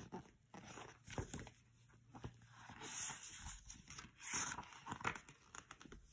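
Quiet handling of a paperback picture book: irregular soft paper rustles as the pages are held up and moved, with a few light taps.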